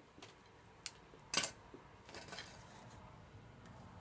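Scissors snipping through florist's oasis tape with a light click, then one sharper clack about one and a half seconds in as things are put down and handled on the table, followed by faint rustling.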